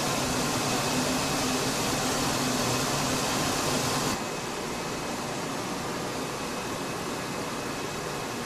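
Steady rushing noise of cooling water running through a Marconi transmitter's water-cooling circuit, with the transmitter in standby, over a faint steady hum. About four seconds in, the sound drops abruptly to a quieter, duller rush.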